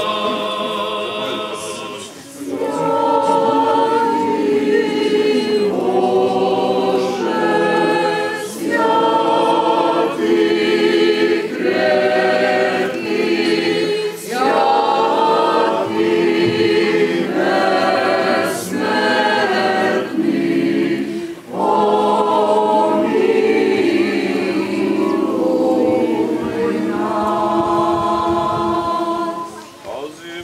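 A choir singing an Orthodox liturgical chant without instruments, in phrases of held notes with short breaks between them.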